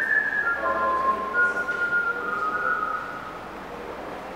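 Someone whistling a slow tune: a few held notes that step down and then back up, stopping about three seconds in.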